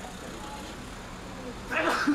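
City street ambience: a steady hum of traffic with people's voices, and a short, louder burst near the end.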